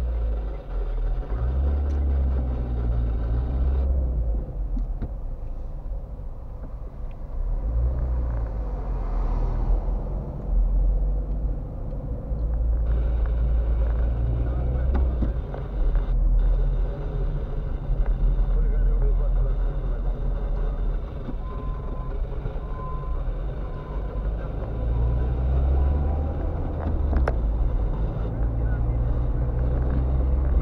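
Road and engine rumble inside a moving car's cabin, swelling and easing as the car's pace changes in traffic.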